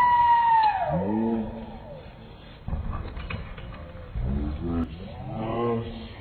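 A long, high shouted call, then bursts of shouting from coaches and spectators as BMX riders roll off the start ramp. A low rumble of the bikes going down the ramp sets in a couple of seconds in.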